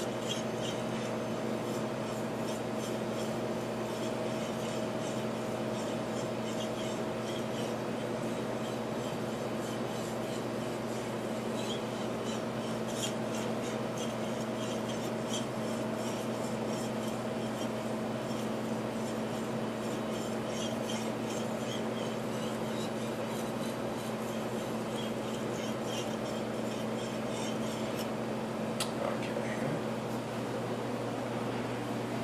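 Steel knife blade rubbed back and forth across a 10000-grit whetstone: a soft scraping with each stroke, over a steady hum of kitchen equipment.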